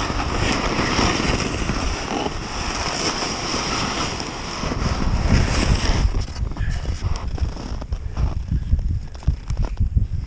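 Skis side-slipping through deep powder snow, a steady rushing hiss for about six seconds, then broken crunches and knocks as the skis shuffle and slow. Wind is buffeting the camera microphone.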